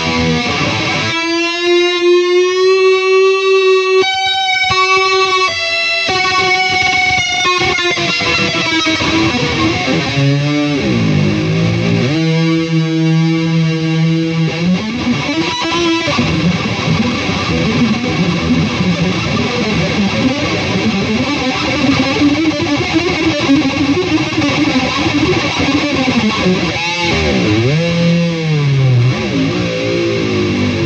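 EVH Wolfgang Special electric guitar played solo through distortion: a long sustained note with vibrato, pitch dips that swoop down and back up, a steady held note, then fast lead runs.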